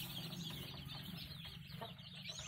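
A brood of day-old caipirão chicks peeping continuously, many short high chirps overlapping, over a steady low hum.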